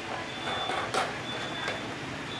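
Plastic filler cap being screwed tight on top of an automatic hand-sanitizer dispenser, with a sharp click about a second in.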